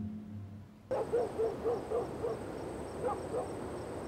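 Night-time outdoor ambience that starts suddenly about a second in. A steady high insect drone and regular chirps run under a string of short, low calls repeating several times a second.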